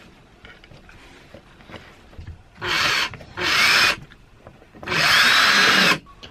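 Power drill running in three short bursts, the last about a second long, driving screws to fasten a metal bracket to a bed frame.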